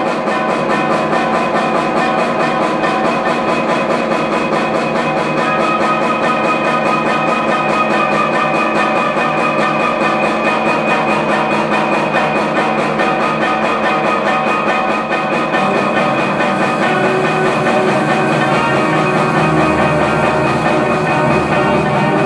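A high school concert band of woodwinds and brass playing sustained, held chords. Lower voices join about three-quarters of the way through and fill out the sound.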